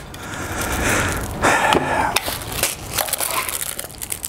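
Plastic packaging being handled: a small clear plastic bag crinkling, with scattered clicks and scrapes as small parts and cables are moved about. The rustle is loudest for about a second, starting about a second in.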